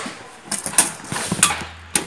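Sharp clicks and rattles of a retractable tape measure being handled, its blade pulled out and laid across a board, several times over the two seconds.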